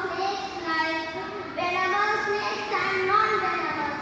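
A child singing, with long held notes.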